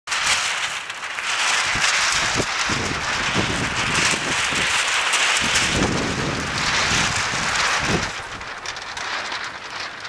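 Wind blowing over the microphone outdoors: a steady hiss with irregular low rumbling gusts, easing about eight seconds in.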